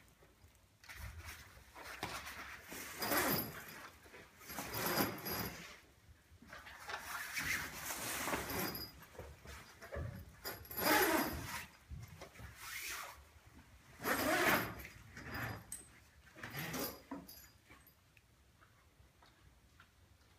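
A zip being pulled along a canvas annex wall in a string of short, uneven pulls, joining the wall to a camper trailer's bag awning, with canvas rustling. The pulls stop a few seconds before the end.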